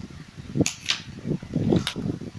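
Three sharp plastic clicks over low, irregular rumbling of handling noise, as a contour makeup kit and its brush are handled close to the phone's microphone.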